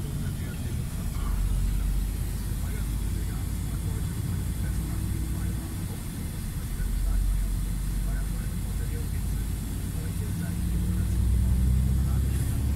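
Heavy truck's diesel engine heard from inside the cab at low road speed, a steady low rumble that swells and eases a few times as the driver works the throttle in slow traffic.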